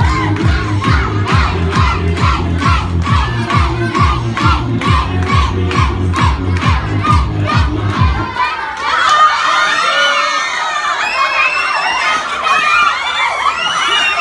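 Music with a steady beat plays for a game of musical chairs, then cuts off suddenly about eight seconds in. Children shout and scream as they rush for the chairs, the music's stopping being the signal to sit.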